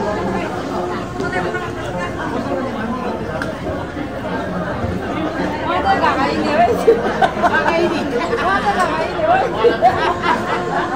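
Many people chattering at once in a room, overlapping voices with no music. About halfway through, a few voices close by become louder over the general babble.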